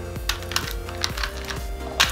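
Plastic clicking and clacking of a Rubik's Cube being twisted and handled: a run of irregular clicks, several a second, over quiet background music.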